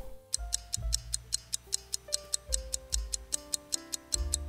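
Clock-ticking sound effect, fast, even ticks about five a second, over light background music with slow held notes, marking a time-lapse while the cake sets.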